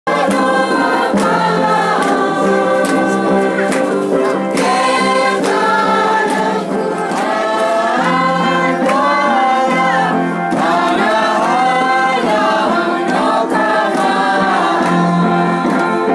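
A group of voices singing a Christian hymn together, loud and steady, with a low held note underneath.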